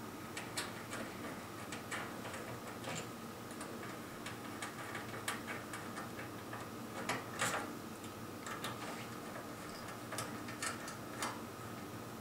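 Small, irregular metallic clicks and ticks of a 3 mm Allen key and clamp screws being worked loose to take a flying-lead clamp off the instrument's metal side panel, with a denser run of clicks about seven seconds in.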